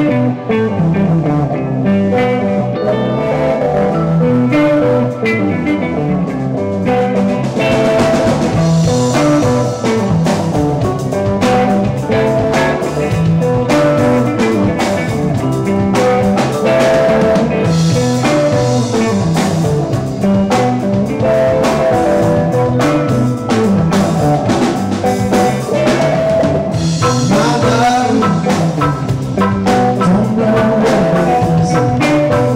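Live band playing a funky instrumental jam on electric guitars, bass guitar and drum kit. The cymbals fill in brighter about eight seconds in.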